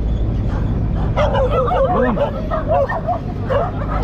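Dogs barking and yipping, a run of quick short calls from about a second in to near the end, over the steady low hum of a jeep's engine.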